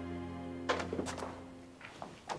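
Background music of sustained tones fading out. About two-thirds of a second in comes a sharp clack, followed by a few lighter knocks, as a glass-panelled door is unlatched and pushed open.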